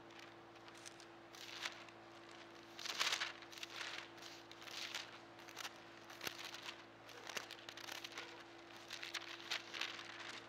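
Thin Bible pages being turned and leafed through: a series of papery rustles, loudest about three seconds in, over a faint steady hum.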